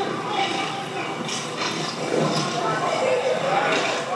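Indistinct voices and street noise from a phone livestream recording played back over courtroom speakers, with a few sharp knocks around the middle.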